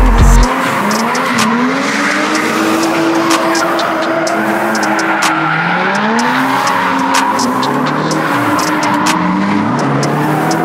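Drift cars on the track, engines revving up and falling back again and again, with tyres squealing as they slide. Sharp clicks are scattered through it.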